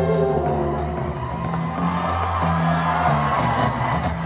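Live rock band with violin playing a sustained, bass-heavy passage, with a crowd cheering over it.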